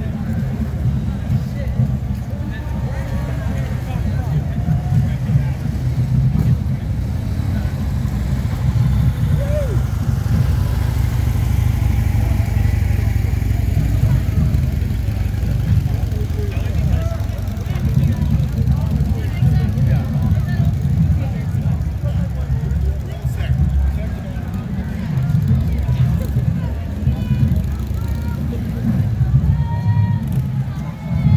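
Chatter of bystanders over a steady low rumble from police motorcycles and a utility vehicle passing slowly.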